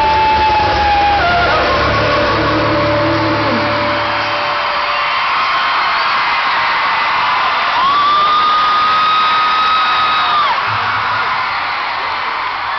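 A live rock band with a male singer holding long, high wailing notes over a crowd that screams and cheers. The low bass drops out about four seconds in, and the longest held note comes later, from about eight to ten and a half seconds in.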